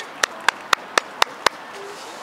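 Six quick hand claps close to the microphone, evenly spaced at about four a second, a spectator's sideline applause for a player.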